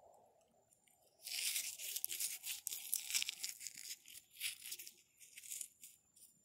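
Close, gritty scraping and crunching from sandy hands handling quartz crystals and soil. It comes in uneven bursts of quick scratches, starting about a second in and lasting about four seconds.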